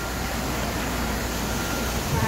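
Steady outdoor city background noise with a constant low rumble, the kind of even hum of distant traffic in a busy downtown square.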